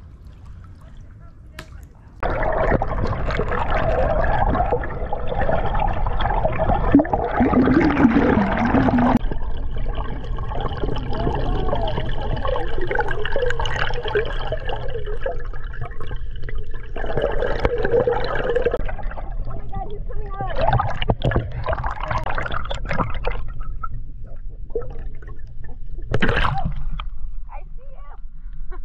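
Muffled water noise from a camera held underwater, with a deep rumble. It starts abruptly about two seconds in, and indistinct, voice-like sounds run over it.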